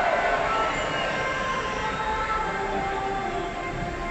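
Fireworks volley dying away: the crackle and echo of the aerial shells fade gradually, with a few steady held tones from the show's music over it.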